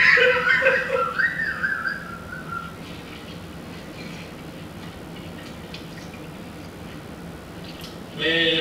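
High-pitched, squealing laughter that stutters and falls in pitch, fading out over the first two seconds or so. It is followed by a steady low hiss of room tone.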